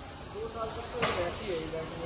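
Faint, distant voices with a brief hiss about a second in.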